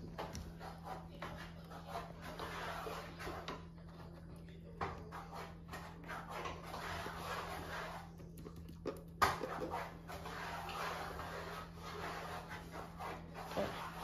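Thick, warm custard cream pouring from a pot and flowing into an aluminium baking tray over biscuits: a soft, uneven wet noise that swells and fades, with a brief click about nine seconds in.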